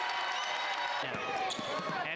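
Basketball bouncing on a hardwood court, the bounces starting about a second in, over arena crowd noise.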